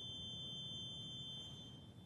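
A single high, steady organ tone held over a low hum of hall noise, fading away near the end as the music closes.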